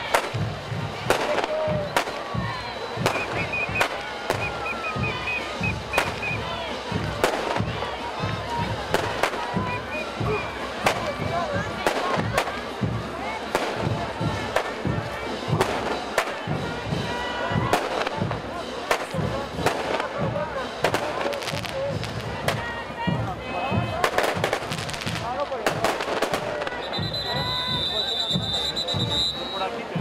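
Parade band music with a steady drum beat, under crowd voices and many sharp cracks. A shrill whistle is held for about two seconds near the end.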